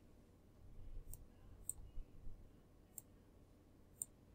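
A few faint, sharp computer mouse clicks, spaced about a second apart, over quiet room noise.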